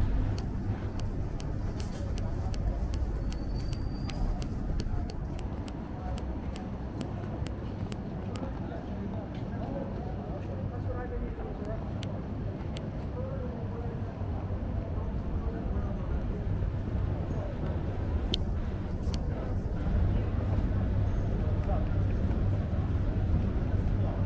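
Street ambience: a steady low hum of traffic under faint, distant voices, with a scatter of light ticks in the first half.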